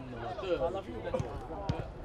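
Footballers' voices shouting and calling on the pitch during live play, with two sharp knocks a little past a second in and again half a second later.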